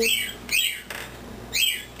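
Pet birds in the house calling: two short, sharp squawks about a second apart, each rising and then falling in pitch, with a soft rustle between them.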